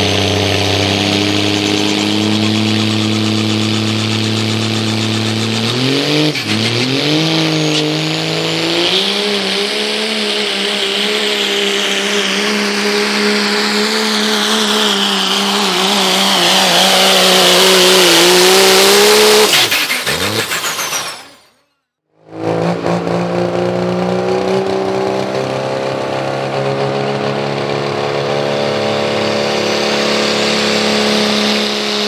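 Diesel pickup engine in a truck pull, holding steady revs, then climbing sharply about six seconds in and running hard at high, wavering revs with a high whine on top for about fourteen seconds before letting off. After a brief dropout, a second diesel pickup's engine runs at steady revs.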